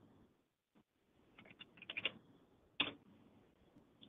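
A few faint computer keyboard keystrokes: a quick cluster of clicks in the middle, then one more sharper click a little later.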